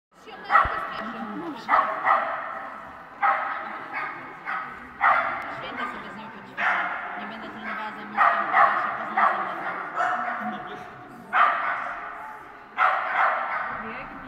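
A dog barking over and over, about once a second, each bark trailing off with a long echo from the large hall.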